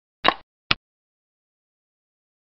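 Two short clacks of a computer xiangqi board's piece-move sound effect, about half a second apart, as a piece is moved to a new point. The first clack is longer, with a brief ring-out; the second is a single sharp click.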